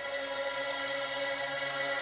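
Electronic synthesizer chord held steady, with no drums, in a hip-hop track's intro.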